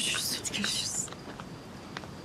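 A woman softly saying "görüşürüz" (goodbye), breathy and hissy, in the first second. Then low background with a few faint clicks.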